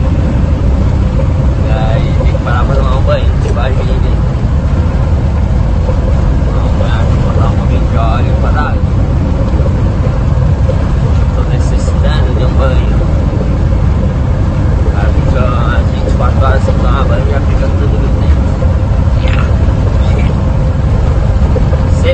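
Truck cab interior noise while driving: a loud, steady low rumble from the truck's engine and road, with a constant hum. A man talks over it at times.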